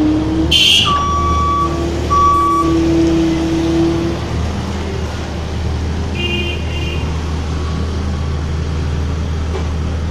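JCB 170 skid-steer loader's diesel engine running steadily with a deep hum while it pushes garbage with its bucket. A brief high squeal comes near the start, followed by two steady beeps about a second and two seconds in.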